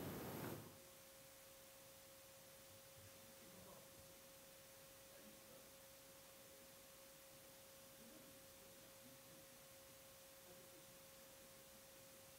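Near silence: room tone with a faint, steady single-pitch hum.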